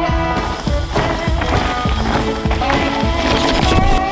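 Background music with a steady beat and sustained melodic notes.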